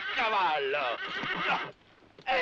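A horse whinnying, with men laughing over it. The sound cuts off shortly before the end.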